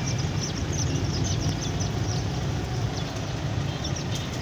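Small birds chirping in quick short notes, thickest in the first second or so, over a steady low rumble.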